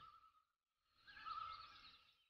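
Near silence, with a faint, brief wavering tone and light hiss about a second in.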